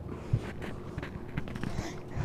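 Quiet rustling and a few soft low thumps from a handheld phone being moved about as someone shifts on a trampoline.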